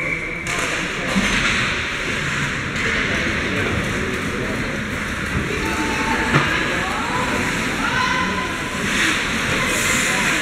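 Ice hockey game sound in an indoor rink: crowd chatter and calls, skate blades on the ice, and stick and puck knocks, with one sharp knock about six seconds in.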